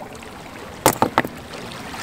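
A rock smashed down on a snail's shell on a boulder: one sharp crack a little under a second in, then two lighter knocks in quick succession.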